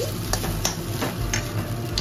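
A flat metal spatula scraping and tossing rice around a steel kadai, a series of quick metal-on-metal scrapes several times a second, over a light sizzle of frying.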